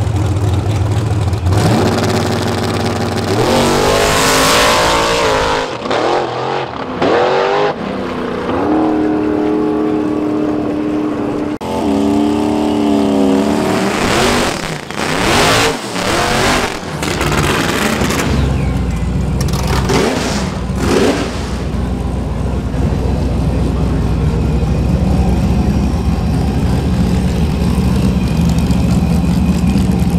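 Drag-racing car engines at full throttle. One car launches and its engine climbs in pitch again and again as it pulls away. About halfway through, a Fox-body Mustang revs through a burnout, with tyre noise, then idles loudly and steadily with a deep drone for the last third.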